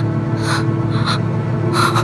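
Suspense background music: a steady low drone and a held tone, with short airy, breath-like pulses recurring about every half second to second.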